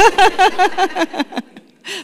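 A woman laughing: a quick run of short, breathy laughs that stops about a second and a half in.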